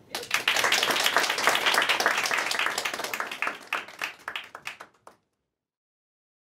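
Audience applauding, the clapping thinning out and fading over a few seconds before it cuts off about five seconds in.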